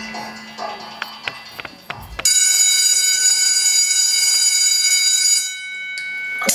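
A few soft clicks and a fading low hum, then about two seconds in a sudden loud, steady, shrill electronic tone like an alarm or buzzer, part of the performance's mixed soundtrack. It holds for about three seconds and drops away, leaving a fainter tone ringing briefly.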